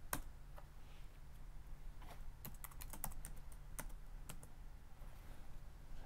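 Typing on a computer keyboard: irregular, light key clicks scattered throughout, over a faint steady low hum.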